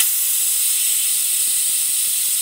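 Sealey pneumatic vacuum brake bleeder hissing steadily as shop compressed air rushes through its trigger gun, the airflow being turned into suction for drawing brake fluid.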